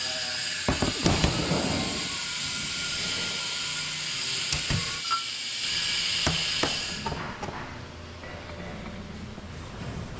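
Metal parts of a Parker P1 piston pump clinking and knocking as pistons, a spring and the cylinder barrel are handled and set down on a steel workbench. The knocks are short and scattered, over a steady hiss that fades about seven seconds in.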